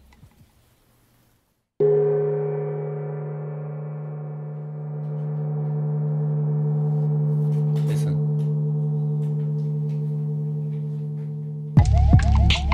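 A large hanging gong struck once with a beater about two seconds in, after near silence. It rings on in a deep hum with many overtones, fades a little, then swells back up before cutting off abruptly near the end.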